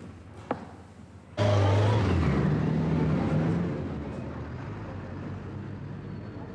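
Street traffic comes in suddenly about a second and a half in: a vehicle engine running loud as a bus and car pass, easing after a couple of seconds to a steady traffic hum. Before it, only a few faint clicks.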